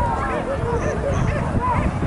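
Boar-hunting dogs barking and yelping in short, repeated cries, mixed with people's voices.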